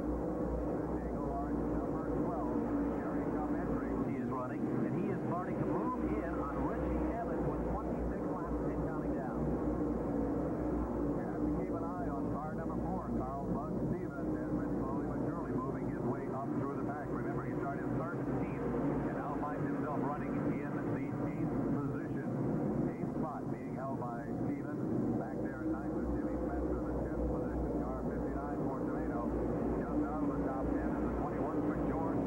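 Engines of NASCAR modified race cars running at speed around the oval, pitch rising and falling as cars pass, on a dull, muffled old recording, with indistinct voices mixed in.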